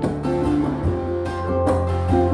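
Instrumental passage of a song: a ukulele plucked and strummed in a steady rhythm over held low bass notes, which step to a new, louder note about a second in.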